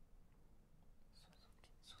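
Near silence, then faint whispering from a little after a second in: contestants conferring under their breath, murmuring "Suzuki".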